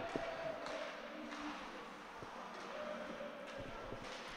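Faint ice hockey rink sound: skates on the ice and a few light knocks of sticks and puck, with no crowd noise.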